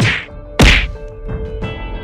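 Two loud sharp percussive hits about half a second apart, the second the louder, then two lighter hits, over background music.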